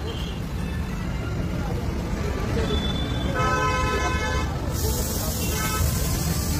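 Street traffic rumbling steadily, with a vehicle horn honking for about a second midway.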